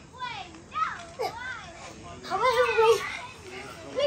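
Young children calling out and shouting while playing, their high voices rising and falling, loudest about two and a half to three seconds in.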